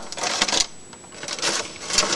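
Clear plastic bags of model-kit parts crinkling and rustling as they are handled in the kit box, with light irregular clicks of the plastic parts inside.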